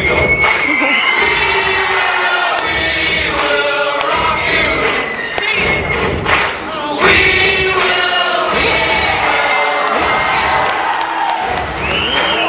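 A crowd cheering and screaming over music playing on a sound system, with many voices overlapping.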